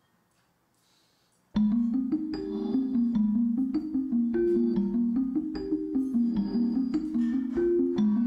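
Near silence for about a second and a half, then an acoustic guitar starts a song's introduction with a steady pattern of short picked notes.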